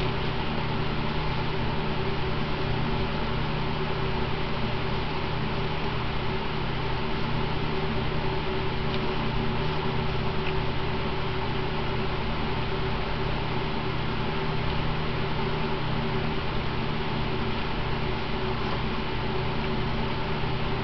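Steady whirring hum of an electric room fan, with constant low humming tones under an even rush of air noise that does not change.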